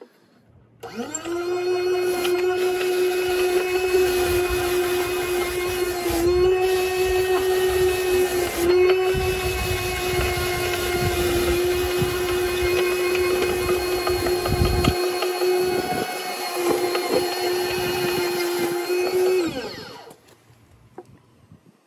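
Battery-powered motor spinning the round bristle brush roller of a homemade boot cleaner, with scrubbing as a boot sole is rubbed against the brush. It spins up about a second in to a steady whine, dips briefly in pitch twice as the boot presses on it, and winds down just before the end.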